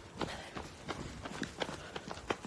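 Running footsteps of a jogger on a paved path, about three footfalls a second.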